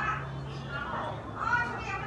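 Background voices of children at play, in short calls, over a low steady hum.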